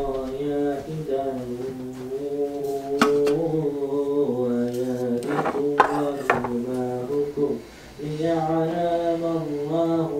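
Background a cappella vocal music: chant-like singing with long, slowly wavering held notes, breaking off for a moment a little past seven seconds in. A few light knocks sound under it.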